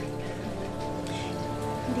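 Background drama score holding sustained notes, over a steady rain-like hiss.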